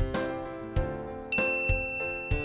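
Background music, with a bright chime sound effect about 1.3 s in that rings on: a 'correct answer' ding marking the tick that appears under the right choice.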